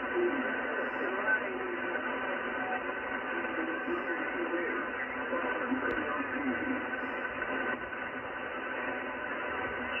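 An Icom IC-746PRO transceiver's speaker playing lower-sideband voice on 7.200 MHz in the 40-metre band. The talk comes through thin and hard to make out, over steady receiver hiss.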